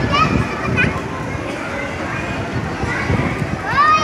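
Many children's voices chattering together at once, with a few short high-pitched shouts in the first second. Near the end one child's call rises in pitch and is held.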